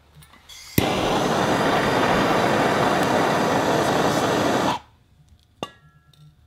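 Handheld gas torch lit with a sharp click under a second in, its flame hissing loudly and steadily for about four seconds before it cuts off suddenly.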